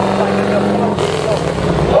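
Busy street sound with people's voices over a steady low hum, which cuts off about a second in.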